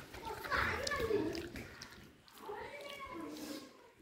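A child's high voice in two stretches of calling or vocalising, each a second or so long, with a short gap between them.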